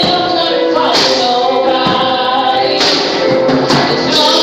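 Live gospel praise-and-worship singing: voices holding long notes in harmony, with a tambourine shaken a few times.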